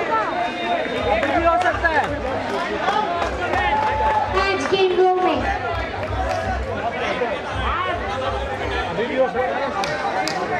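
Several people talking and calling over one another: the chatter of players and onlookers around a cricket pitch.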